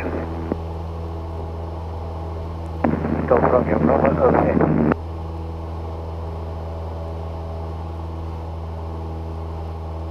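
Cessna 172's piston engine droning steadily at climb power just after takeoff, heard as a low hum on the cockpit headset audio. A short burst of radio speech cuts in about three seconds in and stops near the five-second mark.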